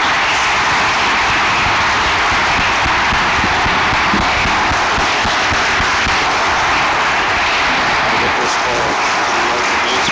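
Audience applauding, a dense and steady clapping that eases slightly near the end.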